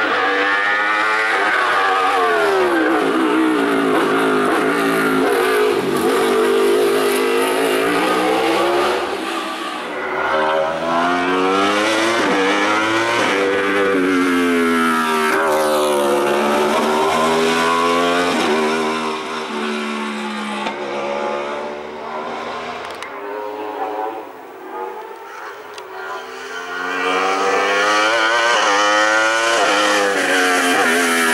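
Sports prototype race car's engine at full throttle on a hill climb, its pitch climbing and dropping again and again as it revs out and changes gear. It fades for a few seconds past the middle, then comes back loud near the end.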